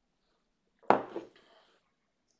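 A mug set down on a desk: one sharp clunk about a second in, with a smaller knock just after and a brief ring.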